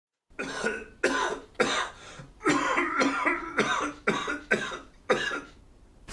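A person coughing repeatedly, about eight hard coughs in quick succession, each roughly half a second apart, stopping shortly before the end.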